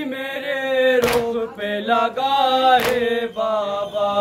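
Men chanting a noha, an Urdu Shia lament, with no instruments. The lead voice holds long notes that slide slowly downward. Two sharp beats, a little under two seconds apart, keep time with the chant.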